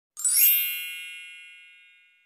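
Subscribe-button sound effect: a single bright, high-pitched ding that sounds about a fifth of a second in and rings away over about a second and a half.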